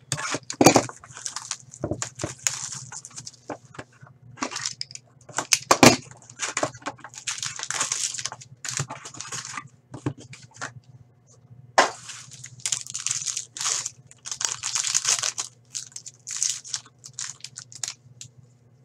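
Foil trading-card packs crinkling and tearing open, with a cardboard box being opened and handled: irregular bursts of crackling and rustling, and a few sharp snaps.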